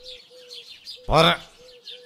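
Birds calling in the background: a short low note repeated a few times a second, with faint high chirps over it. A single spoken word cuts in about a second in.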